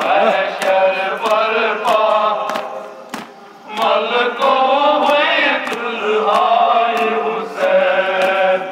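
A crowd of men chanting a Kashmiri noha (mourning dirge) in unison, with a short pause about three seconds in. Sharp rhythmic chest-beating slaps (matam) keep time under the chant, about three every two seconds.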